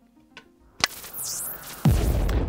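A sharp click as a DC barrel plug goes into the board's power jack, then an electrical hissing sound effect with a high swooping whistle. A deep boom sets in near the end: a staged blow-up of the circuit board on its first power-up.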